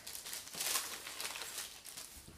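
Paper rustling and sliding in a few short bursts as photographic prints are handled.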